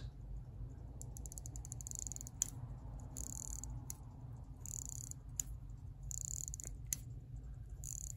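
Vintage Gruen Precision 17-jewel mechanical watch being wound at the crown, its winding ratchet giving faint bursts of rapid clicks about every one and a half seconds, with a few single clicks between them.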